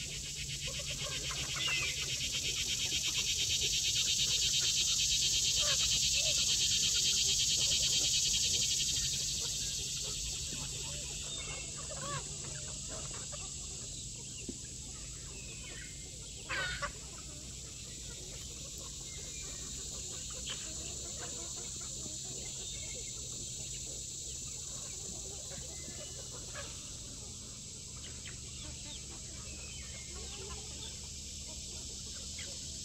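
A large flock of chickens clucking and calling while feeding, with one louder call a little past the middle. Over it, a high-pitched buzzing drone swells for the first third and then eases back to a steady background.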